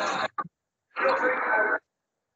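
Short bursts of speech over a video call, with dead silence between them where the call audio cuts out.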